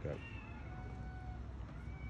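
A cat meowing faintly: one drawn-out meow lasting about a second, then a shorter one near the end.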